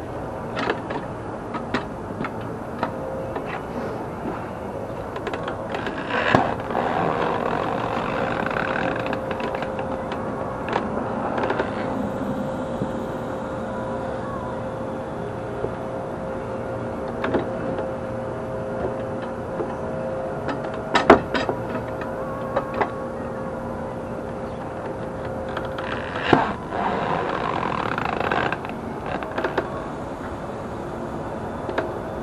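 Manual tire changer worked by hand to lever a tire bead off a steel wheel: scattered sharp metal clanks and knocks, with two longer stretches of rubber and metal scraping, one early and one near the end. A faint steady tone runs underneath through most of the middle.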